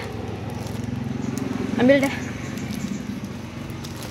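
Motorcycle engine running steadily nearby: a constant low hum with a fast, even pulse.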